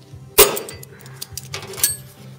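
Hammer striking the steel repair patch: one sharp metallic clang about half a second in, followed by a few lighter clinks and a short ringing tap near the end.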